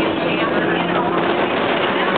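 St. Charles streetcar in motion, heard from inside the car: steady running noise with a low hum, and voices in the background.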